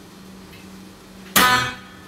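Guitar strummed once about a second and a half in, the chord ringing out briefly after a quiet stretch, with a faint steady hum underneath.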